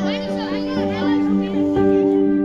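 Background music with long held tones. Over it, for about the first second and a half, there are high, rapidly bending voices, like children calling.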